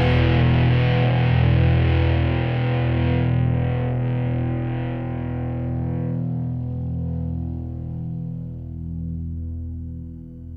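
The closing distorted electric guitar chord of a rock song ringing out through effects and slowly dying away. Its bright upper edge fades first, about halfway through, leaving a low held drone.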